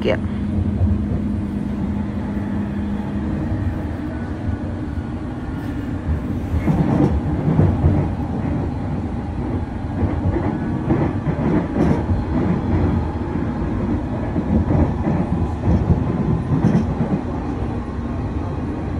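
Train running on rails, heard from on board: a steady rumble that turns into busier wheel-and-track clatter about six seconds in.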